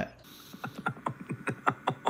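A small bottle being handled in the hands: a rapid, irregular run of light clicks that starts about half a second in.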